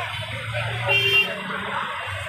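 Busy market background noise with a steady low hum, and a brief high-pitched toot, like a vehicle horn, about a second in.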